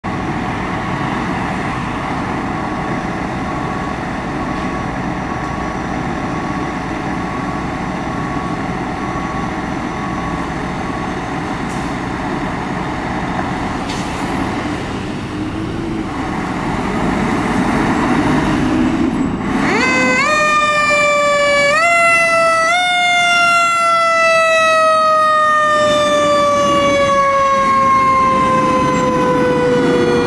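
Fire apparatus diesel engines running with a repeated beeping in the first ten seconds or so. About twenty seconds in, a fire truck's mechanical siren is wound up in several quick pulses, then left to coast slowly down in pitch.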